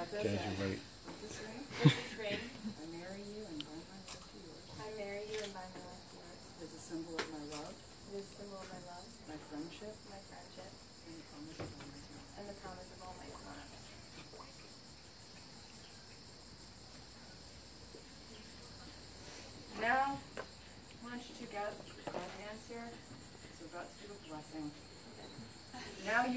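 A steady, high-pitched chorus of insects chirping under faint, quiet speech, with one sharp click about two seconds in.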